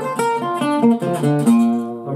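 Unplugged archtop acoustic guitar played with Gypsy picking: a quick single-note line of about five picked notes a second, each note ringing out clearly.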